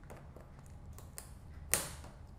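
Packing tape being peeled off a cardboard box, with small scattered crackles and one sharp, louder rip near the end.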